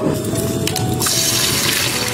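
Eggs sizzling as they fry in hot oil in a pan. The sizzle comes in sharply about a second in.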